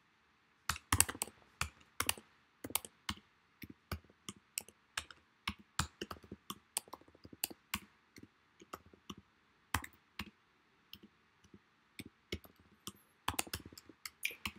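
Typing on a computer keyboard: irregular key clicks, several a second, with short pauses between bursts, starting just under a second in.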